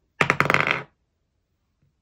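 A twenty-sided die rolled across a paper game board on a table: a quick clatter of many clicks with a little ringing as it tumbles and settles, lasting just over half a second.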